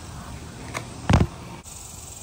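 Faint steady background noise with a soft click, then a single short thump a little past a second in, the loudest sound here.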